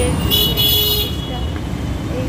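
A vehicle horn sounds once, briefly, just after the start, over the steady rumble of road traffic.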